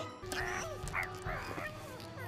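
A cartoon calf's short, high calls, about three in quick succession, over background music.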